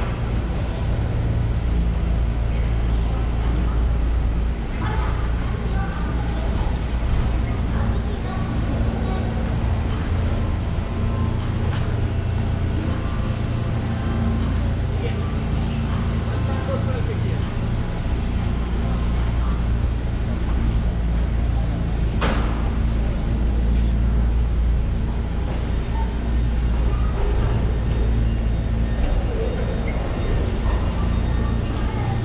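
A steady low mechanical rumble and hum, with indistinct voices in the background and a single sharp click about two-thirds of the way through.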